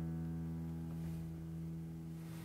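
An acoustic guitar chord left ringing out at the end of a piece, its notes slowly fading away.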